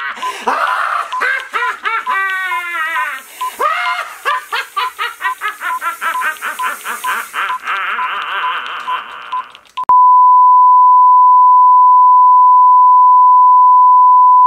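A man's maniacal villain laughter over a quick regular electronic beeping, with a hiss behind it for most of the first several seconds. About ten seconds in, it cuts abruptly to a steady 1 kHz test tone of the kind that goes with colour bars.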